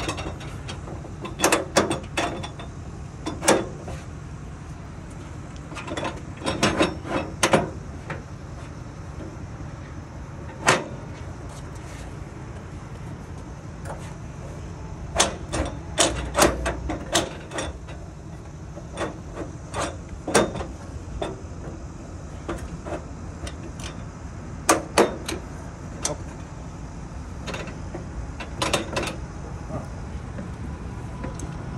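Metal clicks and knocks from a travel trailer's folding metal entry steps as their adjustable legs are repositioned: scattered sharp knocks coming in short clusters.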